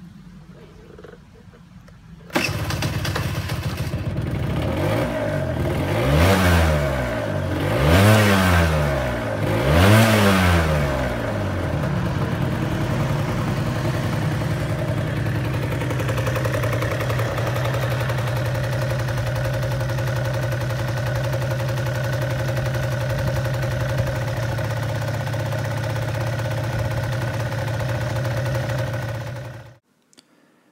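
Piaggio NRG Power 50cc two-stroke scooter engine starting about two seconds in, then blipped three times with the pitch rising and falling each time. It then idles steadily until the sound cuts off suddenly near the end.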